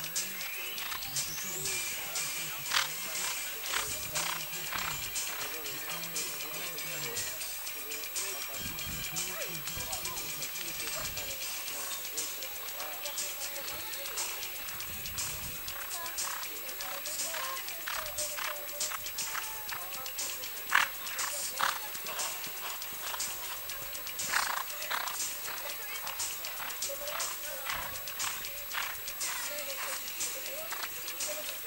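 A show-jumping horse cantering round a grass course, its hoofbeats thudding in an uneven run of knocks.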